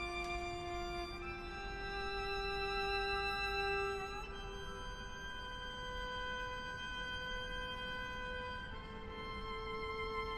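Violin playing a slow line of long, sustained bowed notes, moving to a new note about a second in, again about four seconds in, and near the end.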